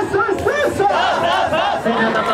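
A group of male hosts loudly chanting and shouting together in unison: a host-club champagne call.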